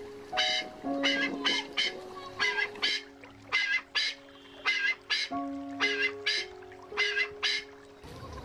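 A bird calling with short repeated calls in quick runs of two or three, over background music of held notes.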